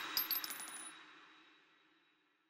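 Tail of a title-card sparkle sound effect: a few quick, high metallic ticks over a fading shimmer, dying away about a second in.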